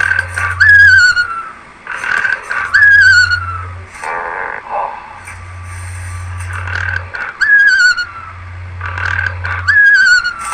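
Playful soundtrack of cartoon sound effects: a falling, warbling whistle tone repeats four times, each one after a short noisy burst, with a steady low hum between them.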